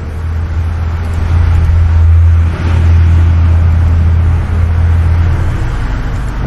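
A loud, low rumble that builds over the first second, holds strongest through the middle and eases off in the last second or so.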